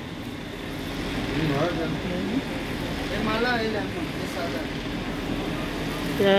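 Indistinct voices talking at a distance, over a steady hum of shop and street noise.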